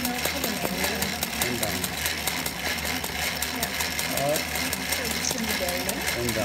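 Old Singer treadle sewing machine, converted for embroidery, running steadily with a rapid, even clatter of needle strokes as material is stitched onto hooped fabric.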